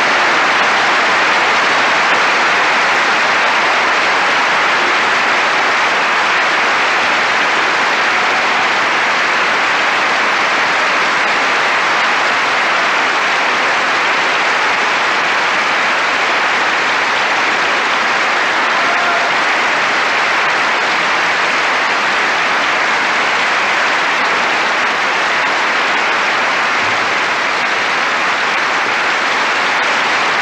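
Large concert-hall audience applauding: dense, steady clapping without a break.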